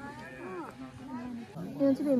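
Several people's voices talking in the background, with no clear words; one voice rises and falls in pitch about half a second in.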